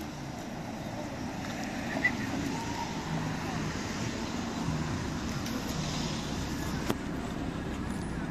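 A car's engine running at low speed as the car rolls slowly away, over a steady wash of outdoor noise. A faint click sounds about two seconds in and another near seven seconds.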